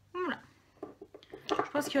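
A woman's voice: a short vocal sound falling in pitch, a few small clicks, then French speech from about halfway through.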